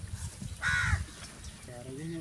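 A crow caws once, a single harsh call a little over half a second in.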